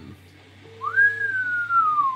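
A person whistling a single note that starts about halfway through, rises quickly and then slides slowly down in pitch, like an impressed "wow" whistle.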